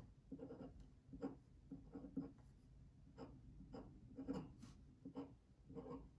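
Pen writing and drawing on paper: faint short scratching strokes, about two a second.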